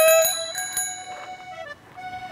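Bicycle bell on a coffee vendor's bicycle ringing in a few quick strokes that fade out about a second in, over the tail of a drawn-out "kopi" call and light background music.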